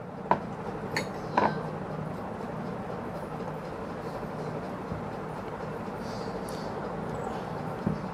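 A few light knocks in the first second and a half as a small glass bowl is handled and set down on a plastic cutting board after a lemon is squeezed into it, over a steady low hum.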